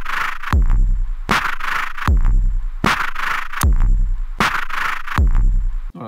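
Modified Ace Tone Rhythm Ace FR-8L drum machine clocking two samples on a Kesako Player in a slow, steady loop. A deep boom that slides down in pitch alternates with a noisy 'tsh' hiss, one hit about every three quarters of a second.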